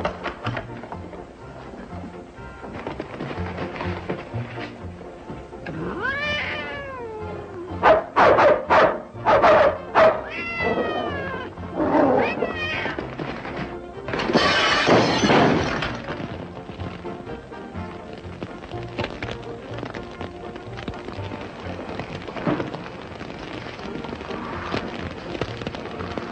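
A cat yowling and meowing over film score music, with a run of short, loud calls in the middle and a harsh, noisy burst just after.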